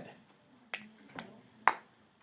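Three short, sharp clicks about half a second apart, the last one the loudest.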